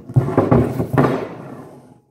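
A man's voice speaking indistinctly, trailing off and fading over the last half second.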